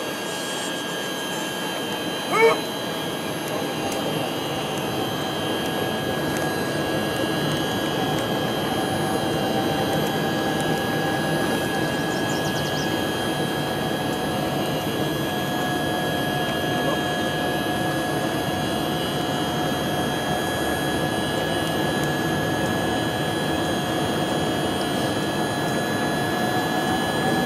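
A steady engine drone with a constant whine running under it, and one short shout about two and a half seconds in.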